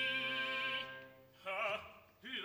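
Operatic singing with wide vibrato over sustained string accompaniment. One held note fades about a second in, then a short sung phrase follows.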